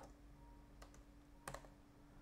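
A few faint keystrokes on a computer keyboard, the loudest about one and a half seconds in, over a faint steady hum.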